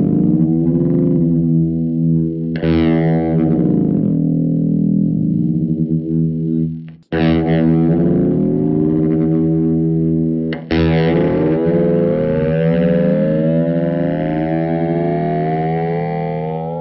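Electric guitar played through a Way Huge Ringworm ring-modulator pedal: held notes with ring-modulated overtones that glide up and down as the knobs are turned. A new note is picked three times, about every four seconds.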